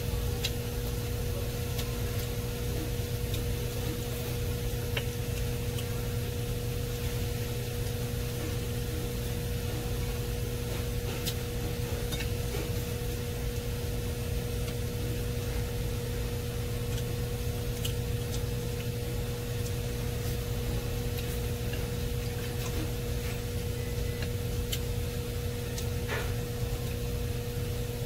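A steady low hum over a soft hiss of room noise, with a few faint, scattered clicks of chopsticks against a ceramic plate.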